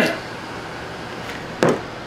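A single sharp knock about one and a half seconds in, over a steady low background hiss.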